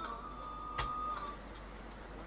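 A faint steady high tone, held for about a second and a half before it fades out, with a soft click partway through.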